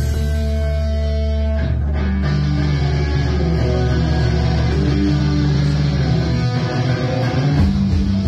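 Live rock band playing with electric guitars, bass and drums, heard from the crowd. A chord is held for the first second and a half, then a heavy riff follows.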